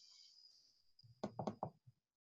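Three quick knocks a little over a second in, with a softer fourth just after, over a faint high hiss.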